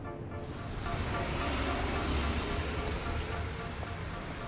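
A car passing by on a city street: a rushing road noise that swells and then fades near the end, with a low rumble and a faint high whine that slowly rises.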